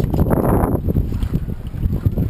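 Wind buffeting the microphone over water sloshing against the hull and outriggers of a wooden outrigger boat (bangka), with a louder surge about half a second in.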